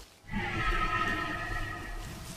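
A hadrosaur's long call on one steady pitch, starting shortly in and slowly fading.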